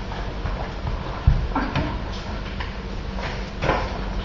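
Footsteps and scuffs of people running and dodging on a concrete garage floor, uneven and irregular, with a heavy thump about a second in.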